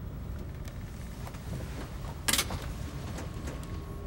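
Steady low engine drone heard inside an airliner cockpit. A short sharp click-like noise comes about two seconds in.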